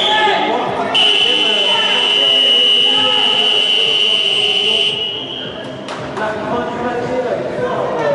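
An arena timer buzzer sounds one long, steady high tone for about five seconds, starting about a second in, over the chatter of a crowd in a large hall. It marks the end of the match time. A sharp click comes shortly after it stops.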